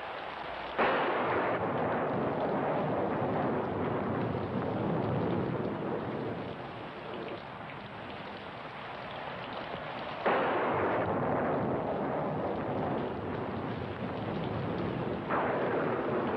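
Thunderstorm: steady rain with three sudden thunderclaps, about a second in, about ten seconds in and near the end, each rolling away over several seconds.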